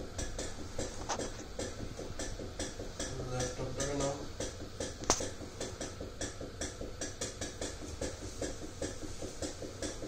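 Impulse oscillometry unit's loudspeaker firing pressure pulses into the mouthpiece, heard as a steady train of sharp clicks at about five a second while the lung-function test runs.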